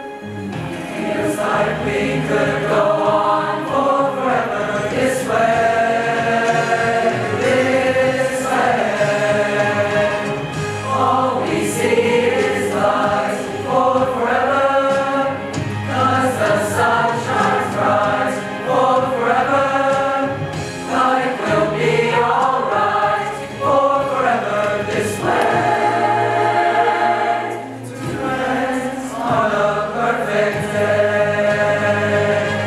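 Mixed youth choir singing in several-part harmony, in long sustained phrases with short breaks between them.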